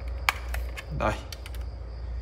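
Plastic snap-fit clips on the case of a FNIRSI SWM-10 handheld spot welder clicking as they are pried apart: one sharp click near the start, then a few fainter ticks in the second half.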